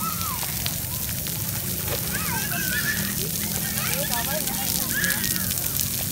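Floor fountain jets spraying steadily and spattering onto a wet stone plaza, with children's voices calling out over the water.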